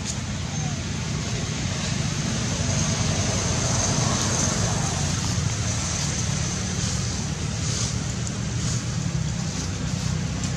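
Steady outdoor background noise: a low rumble under an even high hiss, with no distinct events.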